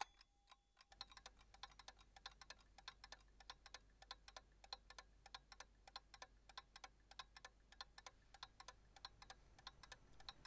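Faint, rapid light clicking, several clicks a second in an uneven rhythm, starting about a second in and running on.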